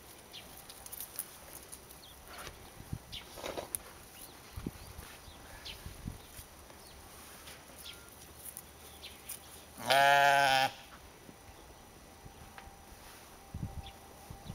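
A sheep bleating once, a single loud call under a second long about ten seconds in. Otherwise there are only faint scattered clicks and rustles from the flock.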